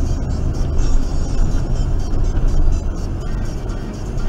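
Steady road and engine noise of a Honda Civic driving at about 30 mph, heard from inside the car, with music playing over it.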